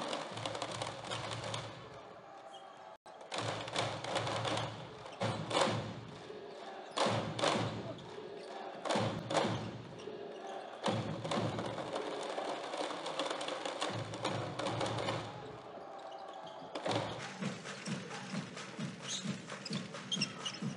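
Basketball arena sound: crowd noise and music in the hall, with occasional thuds. The sound changes abruptly about three seconds in and again near seventeen seconds.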